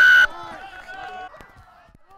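Rugby referee's whistle: a loud, steady, slightly falling blast that cuts off about a quarter second in, followed by faint voices.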